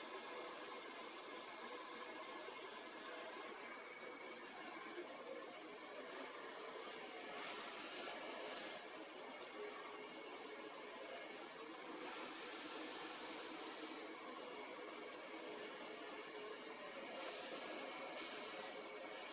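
Handheld hair dryer running steadily as hair is blow-dried straight over a brush; its rushing air grows louder in a few stretches.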